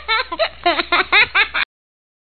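Young children giggling in a quick string of short bursts that cuts off suddenly about a second and a half in.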